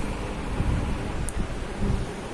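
Low, irregular rumbling handling noise on the recording phone's microphone as the phone is moved, with one faint click a little over a second in.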